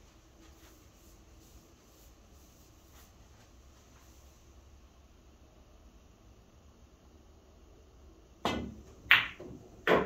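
Quiet room tone while the player aims, then a pool shot about eight and a half seconds in: the cue tip strikes the cue ball, and a sharp clack of ball on ball follows about half a second later. Another sharp knock comes near the end.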